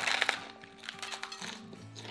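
Crisp hard taco shells crunching as they are bitten, a quick run of crackles in the first half-second, over background music with steady held notes.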